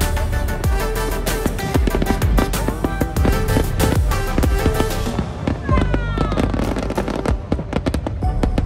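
Aerial fireworks bursting in rapid succession, many sharp bangs close together, over music.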